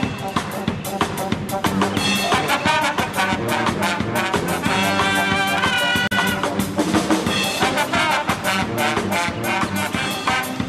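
A brass band playing an upbeat tune, with trumpets and trombones carrying the melody over a steady beat.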